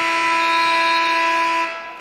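Basketball arena's game-clock horn sounding at 0.0 to end the game: one loud, steady buzzing tone that cuts off sharply near the end.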